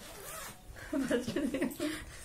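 The zipper of a black leather handbag being pulled open in a short rasp, followed about a second in by women laughing.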